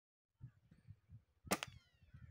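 A single shot from a scoped air rifle about one and a half seconds in: one sharp crack with a short ringing tail.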